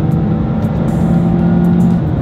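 Mazda2's 1.5-litre petrol engine and road noise heard from inside the cabin as the car is driven on the highway, with background music over it.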